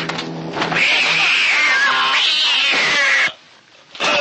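A cat's screeching yowl used as a fight sound effect, high and wavering, lasting about two and a half seconds and cutting off abruptly. A few sharp hits come just before it.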